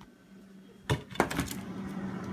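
Freezer door of a refrigerator pulled open: a quick run of sharp clicks and clatters about a second in, over a steady low hum.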